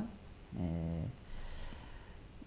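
A short hesitation hum from the woman speaking: a single steady, closed-mouth 'mmm' about half a second long, with a flat pitch, in a pause mid-sentence.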